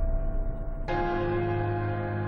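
Film-score music: a held chord, then about a second in a deep bell-like chord is struck and rings on, slowly fading.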